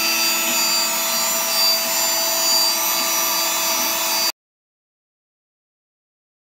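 Homemade CNC router's spindle running steadily over a carbon-fibre sheet: an even whine with several steady tones over a hiss. It cuts off suddenly about four seconds in.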